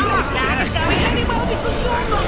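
Voices from several cartoon soundtracks playing at once, overlapping into a jumbled babble of dialogue and sound effects.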